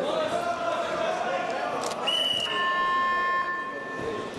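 A short, high whistle blast about two seconds in, then a steady electronic buzzer tone for about a second, sounding over voices in a large sports hall as the wrestling bout is stopped.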